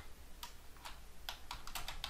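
Computer keyboard typing: a few separate keystrokes, then a quicker run of keys in the second half.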